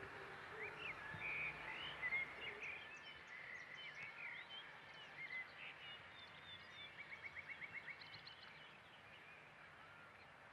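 Birds chirping and calling, faint, in a mix of short whistles and chirps, with a quick run of about ten repeated notes about seven seconds in.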